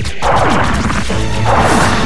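Two crash sound effects over background music: one just after the start and another about a second and a half in. Each is a sudden noisy burst trailing falling tones.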